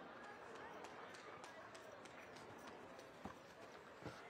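Faint, quick footfalls of a handler jogging a dog on artificial turf: light ticks about three times a second, with one soft thump near the end, over a low murmur of background voices.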